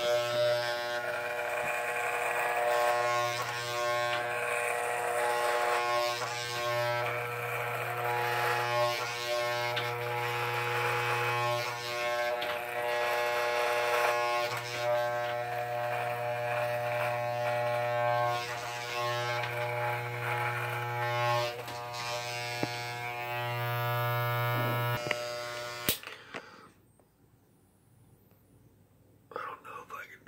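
Electric hair clippers buzzing steadily while being run over beard stubble on the chin and neck, the cutting noise rising and falling with each stroke. The clippers are switched off suddenly near the end.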